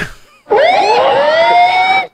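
A single loud siren-like tone that starts about half a second in, rises in pitch and levels off, then cuts off suddenly after about a second and a half.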